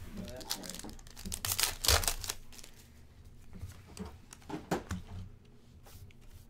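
Foil trading-card pack being torn open and its wrapper crinkled, loudest about one and a half to two seconds in, followed by lighter scattered rustles and clicks as the cards are handled.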